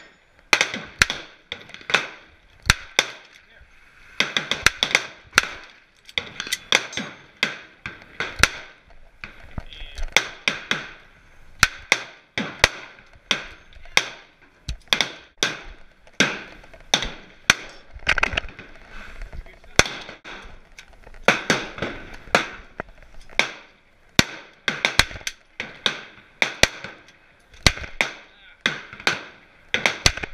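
Revolver and other gunfire on a shooting range: sharp cracks coming irregularly, often several a second.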